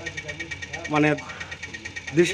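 A man's voice says one short word about a second in, over a steady background drone with a fast, even pulse, like an idling engine.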